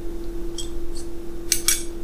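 Small metallic clicks and two sharper clinks of a small steel Empire combination square being handled, its ruler sliding in the head, over a steady hum.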